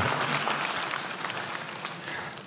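Studio audience applauding, the clapping dying away over the two seconds.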